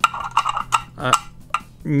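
Clear hard-plastic cube display box handled and pulled apart in the hands: a series of light plastic clicks and clacks.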